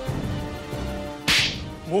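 A single sharp slap across the face, loud and crisp, about a second and a quarter in. It lands over held notes of background music.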